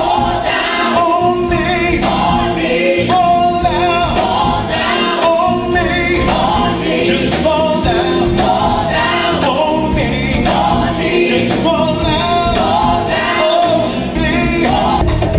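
Live gospel music: a group of singers in choir-style harmony over a band with bass guitar, keyboards and drums, playing steadily.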